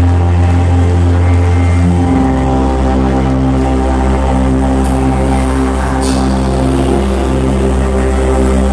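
Progressive house DJ set playing loud over a club sound system: a sustained deep bass note drops lower about two seconds in under steady held synth tones, with two short high swishes near the middle.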